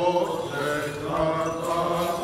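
Greek Orthodox Byzantine chant by male voices: a melody in held notes that step and slide between pitches, over a steady low drone note.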